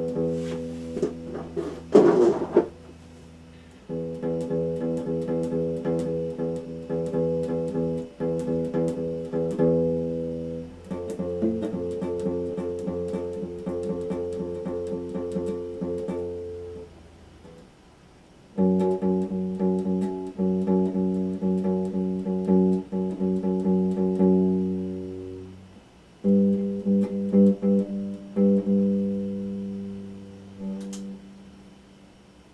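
Electric guitar played alone: held chords and picked notes in phrases of several seconds, with short breaks between them. A brief loud scratchy burst comes about two seconds in.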